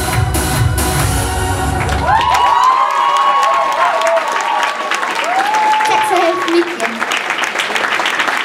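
A song's backing track comes to an end about two and a half seconds in, and the audience breaks into applause and cheering.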